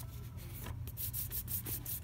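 A hand rubbing and scraping across a DVD box set as it is handled: a run of short, scratchy strokes over a steady low hum.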